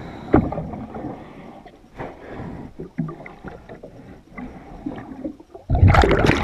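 Underwater sound recorded beside a boat hull during diving work: irregular knocks and scrapes, then near the end a sudden loud rush of a diver's exhaled regulator bubbles.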